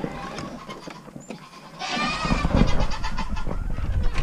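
Goats bleating, several calls overlapping, beginning about two seconds in after a quieter stretch of faint rustling.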